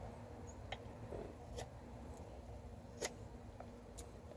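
A few faint, sharp clicks, about four, spaced apart, the clearest about three seconds in: a fixed-blade knife handled against a wooden stick during carving, over a low steady outdoor background.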